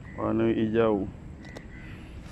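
A man's voice: one drawn-out vocal utterance lasting under a second, near the start.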